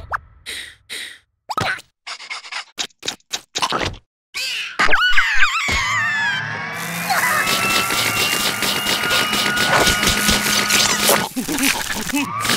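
Cartoon sound effects mixed with a larva character's wordless vocal noises. The first half is short blips and pops with gaps between them, and a gliding cry comes about five seconds in. After that a long, dense sustained sound runs until just before the end.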